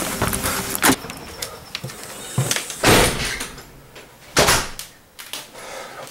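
A house door being opened and shut, with a few separate knocks and short rushing noises about a second, three seconds and four and a half seconds in.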